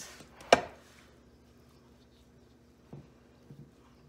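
Silicone spatula patting thick fudge down in a glass baking pan: one sharp knock about half a second in, then a few soft taps near the end.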